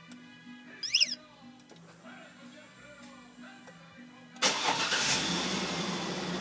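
2003 Chevy Tahoe's V8 started by remote start, heard from inside the cab: a short electronic chirp about a second in, then the engine cranks and catches a little past four seconds and settles into a steady idle.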